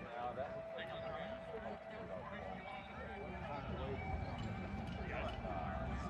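Distant murmur of an outdoor crowd: several overlapping voices, none close.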